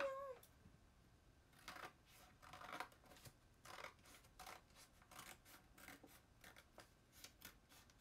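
Scissors cutting paper: a string of faint, irregular snips.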